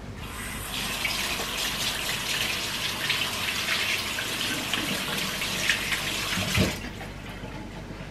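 Kitchen tap running into a sink, turned on just after the start and shut off near the end, with a knock just before the water stops.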